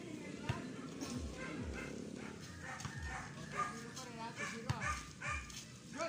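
A small dog barking and yipping in short, repeated calls, mostly in the second half, amid people's voices. Scattered dull thuds, like a basketball bouncing on a dirt court, come underneath.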